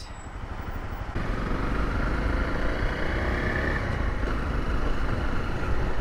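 Honda CRF250L's single-cylinder engine riding in traffic, with wind and road noise on the camera microphone. It gets louder about a second in as the bike pulls away, then runs steadily.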